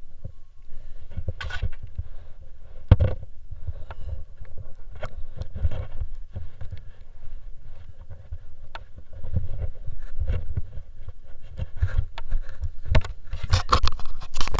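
Rustling and scraping handling noise right at an action camera's microphone, gloves and clothing rubbing against it over an uneven low rumble, with scattered knocks. The knocks come thickest near the end, as a finger works at the camera.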